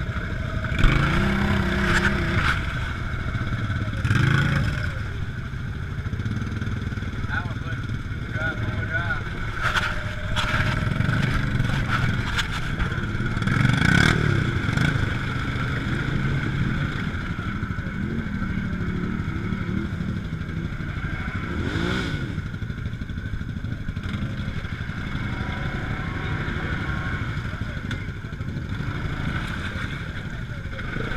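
Off-road engines of a side-by-side UTV and nearby ATVs running in a mud hole, a steady engine drone with a few short rises in pitch.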